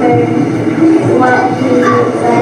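A child's voice speaking into a microphone over a PA system, echoing in a large hall and muffled to the point of being unintelligible, with a steady din of room noise underneath.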